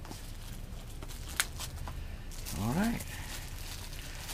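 Small cardboard product box and its plastic packaging being handled and opened by hand: light rustles and clicks, with one sharp click about a third of the way in. Past the middle comes a brief vocal sound from a person.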